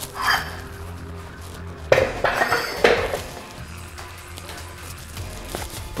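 Metallic clanks of a steel Rogue yoke and its loaded weight plates: sharp knocks about two and three seconds in, with a smaller one at the start, over steady background music.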